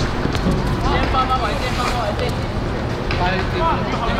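Players' voices shouting across the pitch over a steady rumble of wind on the microphone.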